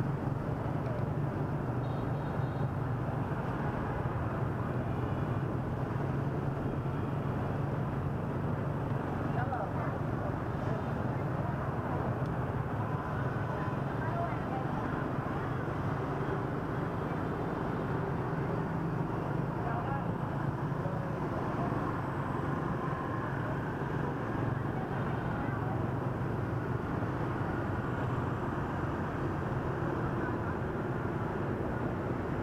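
Dense motorbike traffic heard while riding along with it: a steady rumble of many small scooter engines mixed with wind noise on the microphone.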